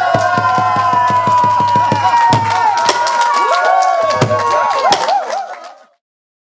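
A Korean folk-song (minyo) singer holds the long final note of her song, with rapid percussive strokes and audience shouts and cheers beneath it. It all fades out just before the end.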